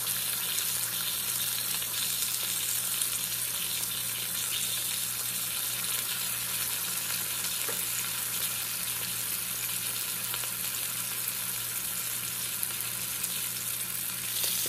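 Beef rump roast searing in hot oil, held up on its end in a slow-cooker insert: a steady, even sizzle as the edge browns. A faint low steady hum runs underneath.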